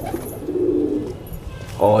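Domestic pigeon cooing: one low coo of under a second, about halfway through.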